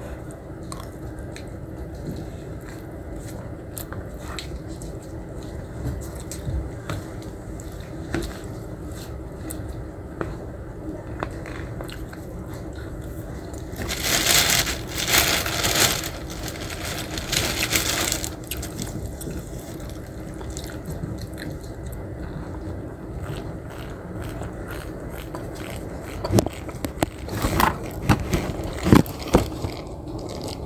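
Eating from a plastic takeaway box: a plastic spoon scraping and clicking against the tray, with chewing, over a steady low hum in the room. A louder noisy stretch of a few seconds comes about halfway through, and a run of sharper clicks near the end.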